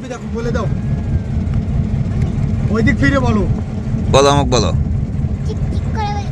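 A river trawler's diesel engine running steadily, a loud low drone with a fast, even pulse. Short bursts of voices come over it three times.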